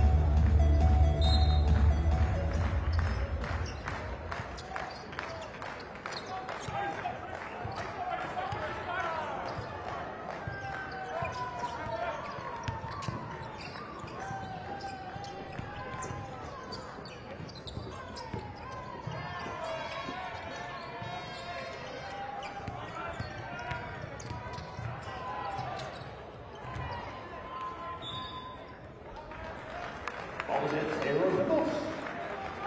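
Basketball arena ambience during play: a ball bouncing on the court amid crowd voices. Loud arena music with a heavy bass plays over the first few seconds, then fades out.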